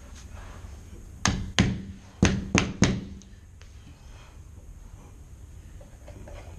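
A mallet knocking a rubber T-molding down into its nailed-down track: five sharp knocks in about a second and a half, starting about a second in.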